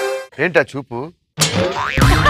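Comedy sound effects added to a TV skit: a held musical sting cuts off just after the start, and a sound sweeping upward in pitch follows in the last half-second, between a short spoken line.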